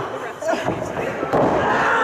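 A wrestler taken down and slammed onto the ring mat, a heavy thud about two-thirds of the way in, with voices from the crowd shouting over and after it.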